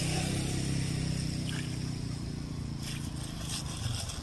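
A motor vehicle's engine running steadily, slowly fading away, with a few soft plastic-bag rustles near the end.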